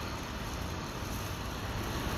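Steady city street noise: a low traffic hum under an even hiss, with no distinct events.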